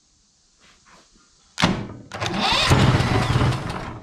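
Briggs & Stratton Vanguard engine cranking on its electric starter, worked from a remote starter switch. It starts suddenly about a second and a half in, runs for about two seconds and dies away without the engine staying running; it might need a little choke.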